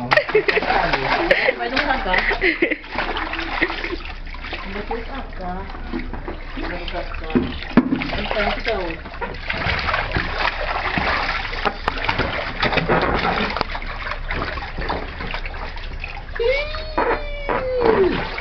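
Water splashing and sloshing in a small inflatable paddling pool as a man and a toddler move about in it. Voices break in at times, including a long rising-then-falling vocal sound near the end.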